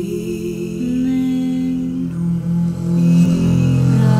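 Slow vocal music: female voices hum long, overlapping held notes over a double bass, the notes moving in steps and swelling a little about three seconds in.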